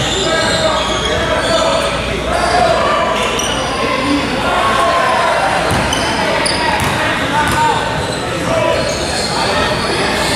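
Basketball bouncing on a hardwood gym floor as the shooter dribbles at the free-throw line, with voices echoing around a large gym.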